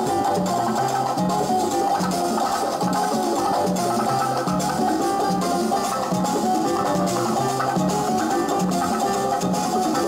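Live Latin band playing salsa music: plucked guitar-like strings over a repeating bass line, with light percussion.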